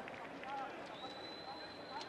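Faint stadium crowd ambience at a football match, with a thin, steady high tone coming in about halfway through.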